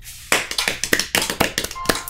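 Rapid, uneven hand claps, several a second, starting about a third of a second in.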